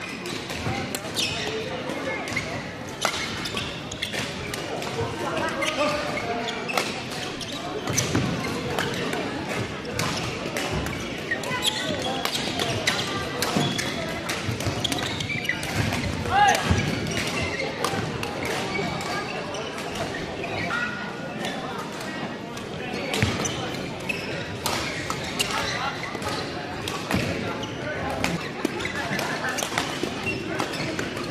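Badminton play in an echoing sports hall: repeated sharp racket strikes on shuttlecocks and footfalls on the court, over constant indistinct chatter from players and onlookers. A louder thud a little past halfway.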